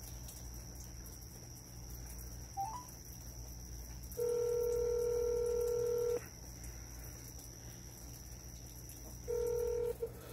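Phone call ringback tone playing through a smartphone's loudspeaker: one steady two-second ring about four seconds in, and the next ring starting near the end, with a short rising beep a few seconds before the first ring.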